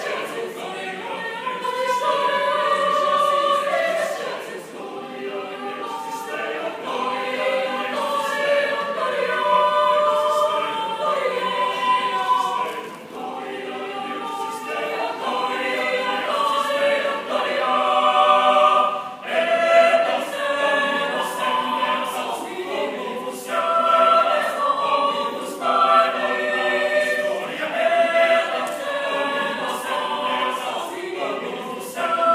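Mixed choir of men's and women's voices singing a cappella, holding and shifting chords that swell and ease in loudness, with a few brief dips.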